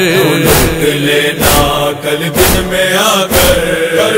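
Urdu noha lament chanted by a young male voice in long held notes, over a heavy beat of chest-beating (matam) that lands about once a second.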